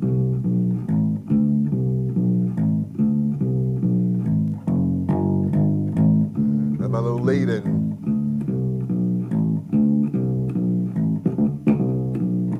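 Electric bass played fingerstyle: a four-note walking line kept going, with pickup notes, leading notes and fills added around it, in a steady stream of plucked notes. A brief voice is heard about seven seconds in.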